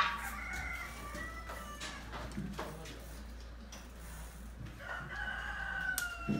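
A rooster crowing: a loud call right at the start that trails off over about two seconds, and a second long crow beginning about five seconds in.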